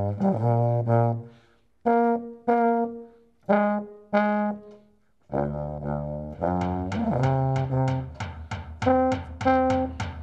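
A small tuba (an upright three-valve brass horn) playing short phrases of separate notes, with two brief pauses in the first half. After that it plays steadily, and about two-thirds of the way in a drum joins, beating about three times a second against it.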